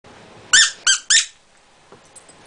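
Squeaky dog toy squeezed three times in quick succession: three short, high squeaks, each rising then falling in pitch.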